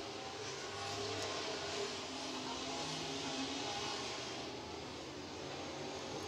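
Several dirt-track super truck engines running together as the field laps the oval, heard from a distance as a steady mix of engine notes that shift slightly in pitch.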